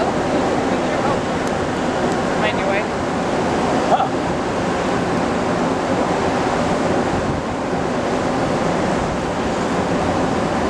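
Steady rushing noise of wind and sea on a cruise ship's open deck, with wind buffeting the microphone.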